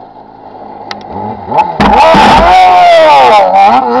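Rally buggy's engine revving hard as it slides past close by on loose dirt. It grows louder until about two seconds in, then stays very loud with dirt and gravel spraying. The engine note dips and climbs again near the end.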